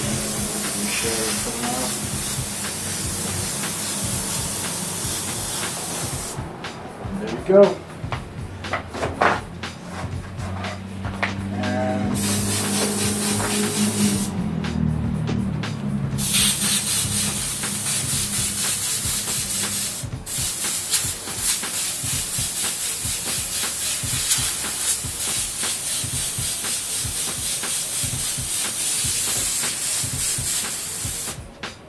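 Airbrush hissing as it sprays paint in long runs. It stops for several seconds about a fifth of the way in and again briefly around halfway, then sprays steadily through the second half.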